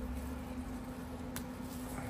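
Quiet room tone with a steady low hum and one faint click a little past halfway.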